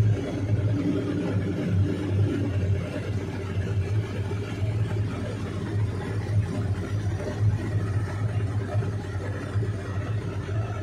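Engine running steadily with a low, slightly pulsing hum as the craft it drives pushes through floodwater, with water rushing and splashing at its bow wave.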